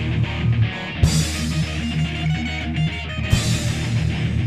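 Screamo/post-hardcore band track with electric guitars and bass over drums. Two loud accented hits, about a second in and again just past three seconds.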